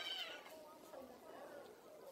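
Pig-tailed macaque giving a short, high-pitched wavering cry at the start, fading within about half a second.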